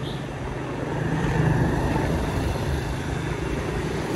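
Riding a motorbike along a city street: a steady engine hum under road and wind noise, getting a little louder about a second in.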